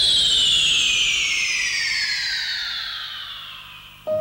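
A long falling whistling glide, several tones sliding down together from high to middle pitch, fading steadily as it drops. It sounds like an electronic sweep effect on a TV show soundtrack.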